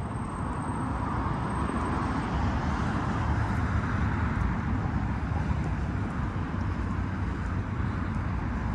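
Steady outdoor city background noise, mostly a low rumble of distant road traffic. A faint high whine sounds for about the first two seconds.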